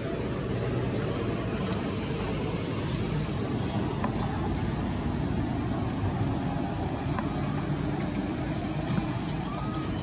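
Steady low rumbling outdoor background noise with a few faint clicks.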